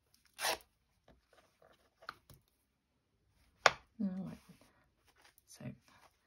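Hands handling and arranging fabric scraps on a table: soft rustles and small clicks, with a sharp short sound about half a second in and a louder, sharper one a little past halfway, followed by a few spoken words.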